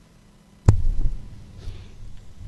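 Microphone handling noise: a sharp thump about two-thirds of a second in, a smaller knock just after, then low rumbling that fades as the microphone on its stand is gripped and adjusted.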